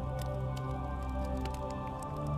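Background music of sustained, steady low tones, with scattered sharp clicks and crackles over it.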